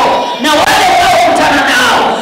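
A woman preacher shouting into a handheld microphone in a high, strained voice. After a brief break she holds one long wavering cry.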